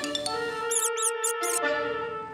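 Cartoon background music with long held notes. About a second in, a quick run of four high, squeaky chirps gives voice to a little cartoon robot.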